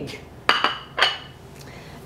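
Two clinks of dishware against a hard countertop, about half a second apart, each with a short high ring.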